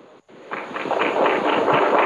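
Audience applauding, starting about half a second in after a moment of near silence and holding steady through the rest.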